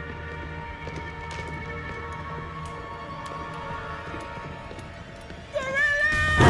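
Tense film score of long held tones over a low drone, with faint scattered clicks. About half a second before the end, a loud high cry with wavering pitch breaks in.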